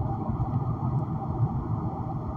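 Steady low rumbling background noise.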